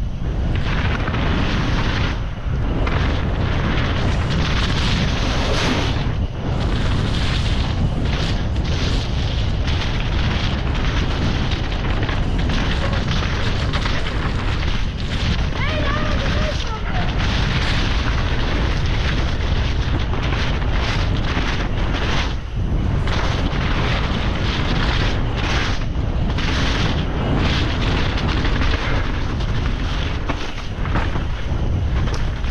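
Wind buffeting the camera microphone, mixed with tyre roar and rattling from a downhill mountain bike running fast down a dirt and mud trail.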